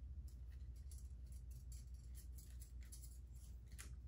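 Faint small clicks and crinkles of hair clips and their packaging being handled and picked open by hand, over a low steady hum.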